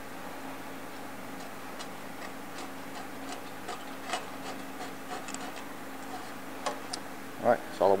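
Light, irregular plastic clicks and ticks of a push-through zip tie being threaded through a transmission cooler's finned core, over a steady low hum.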